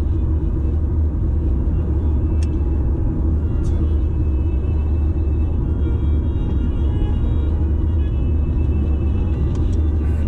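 Steady low road rumble inside a car's cabin as it coasts down a long steep descent, with faint music underneath.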